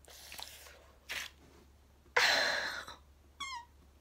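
Hair-removal wax strip ripped off the armpit in one sudden pull about two seconds in, followed by a short high-pitched yelp; breathy sounds while bracing before it.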